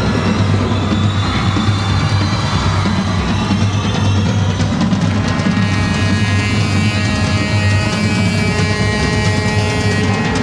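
Live glam metal concert intro: a steady low drone with drums, and held, pitched tones building up from about halfway through.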